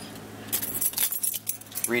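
A bunch of keys jingling: a run of small metallic clinks and clicks that starts about half a second in.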